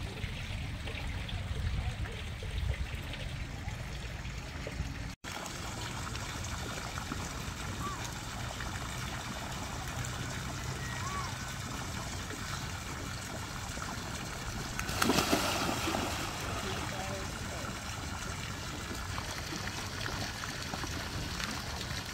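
Water steadily splashing and trickling into a small pond from a water jet, starting after an abrupt cut about five seconds in, with a brief louder rush about fifteen seconds in. Before the cut only a low outdoor rumble is heard.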